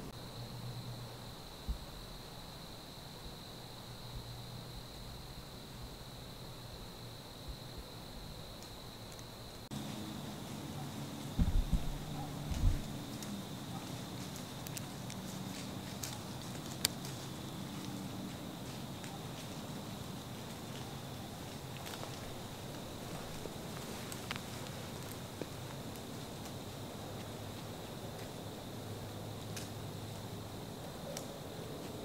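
Quiet woodland ambience with a faint steady high-pitched tone throughout. Two dull thumps a little over a second apart come about a third of the way in, and a few small sharp clicks are scattered after.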